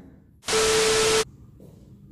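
A burst of loud static-like hiss with a single steady tone running through it, lasting under a second and starting and stopping abruptly: an edited-in sound effect.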